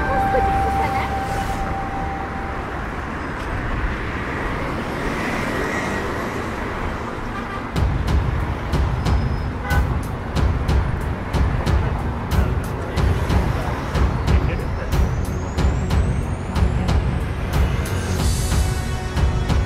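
Busy city street traffic, cars and taxis passing, with voices of people walking nearby. About eight seconds in, a pulsing low rumble and sharp ticks join the traffic, and a rising whine runs through the last few seconds.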